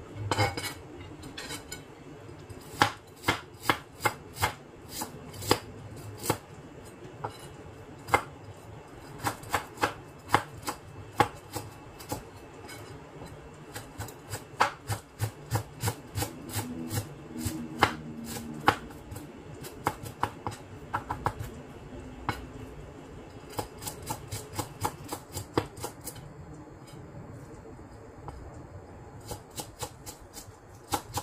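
Chef's knife chopping and mincing fresh ginger on a plastic cutting board: irregular sharp taps, sometimes in quick runs of several strokes.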